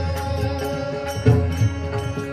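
Pakhawaj drumming in devotional kirtan music, with deep resonant bass strokes and sharper strokes, the loudest a little past a second in, over sustained held notes.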